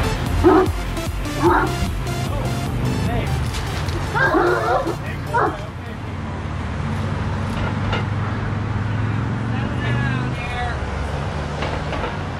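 A dog barking in a tense encounter with another dog, about five loud barks in the first half, then a short wavering whine near the end.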